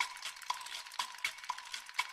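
Even ticking, about two clicks a second, each with a short high tone, over a steady crackle and hiss like a record's surface noise.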